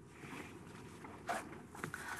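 Quiet room tone with two soft, short clicks, about a second and a half and just under two seconds in.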